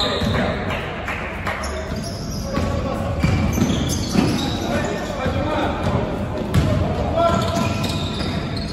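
Basketball dribbled on a hardwood gym floor during live play, with repeated bounces and indistinct players' voices, echoing in a large sports hall.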